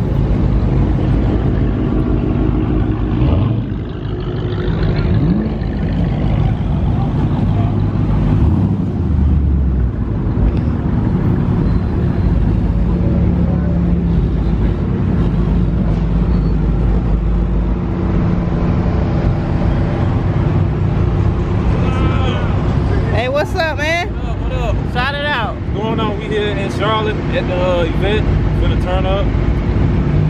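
Car engines idling steadily, mixed with wind rumble on a sensitive camera microphone that was damaged in a drop. Indistinct voices chatter over them in the last several seconds.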